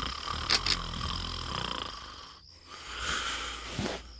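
A man snoring: one long rasping breath, a brief pause about two and a half seconds in, then another.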